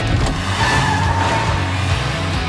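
Minivan engine accelerating, with trailer music underneath.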